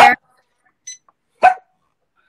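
A single short, sharp bark about one and a half seconds in, heard through video-call audio.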